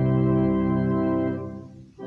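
Organ playing a hymn tune in held chords; the phrase ends and the sound dies away briefly near the end.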